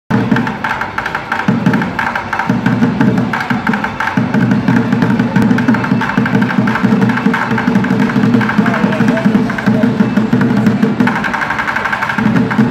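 Bucket drumming: two street drummers beating a fast, continuous rhythm with drumsticks on upturned orange plastic five-gallon buckets, a dense run of sharp stick hits.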